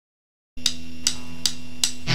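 A drummer's count-in on a raw demo recording: four evenly spaced clicks, a little under three a second, over a steady amplifier hum that starts after a moment of silence.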